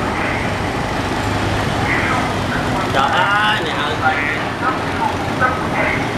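Steady city street traffic, mostly small motorbike engines passing, with people's voices talking nearby, clearest about three seconds in.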